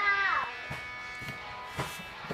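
A falling, voice-like tone in the first half second, then faint background music. Near the end comes one light plastic click as the gear lever of a kids' electric ride-on car is moved.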